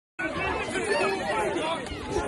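Many people's voices talking and calling over one another at once, a tangle of overlapping speech from a jostling crowd.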